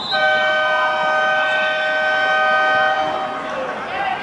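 A horn sounding one long, steady two-tone blast of about three seconds that starts abruptly and fades out.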